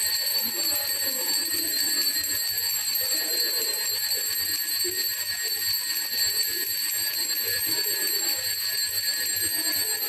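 Altar bells ringing continuously during a benediction with the monstrance, a steady high shimmering ring, with faint irregular sound low down underneath.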